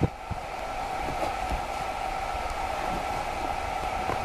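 Steady whirring hum of a small motor, even in pitch throughout, with faint scratches of a ballpoint pen writing on paper.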